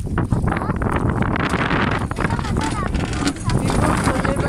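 Wind buffeting the microphone and water splashing against the hull of a small boat under way through choppy water.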